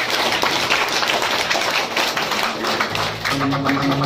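Audience clapping and crowd noise in a club between lines of a live rock set. About three seconds in, an electric guitar comes in with a low, fast-pulsing riff.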